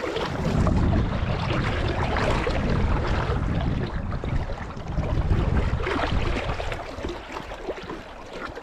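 Wind noise on the microphone, with water swishing and splashing around legs wading through a shallow river.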